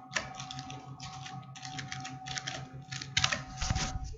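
Typing on a computer keyboard: irregular runs of keystroke clicks, a little louder near the end.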